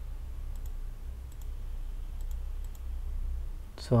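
Faint computer mouse clicks, about four pairs of quick clicks spread over a few seconds, over a steady low hum.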